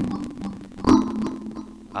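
Synthesized hits from FL Studio's Autogun plugin, one at the start and another about a second in, broken up by scattered crackling clicks. The crackling comes from CPU buffer underruns at a low 512-sample audio buffer.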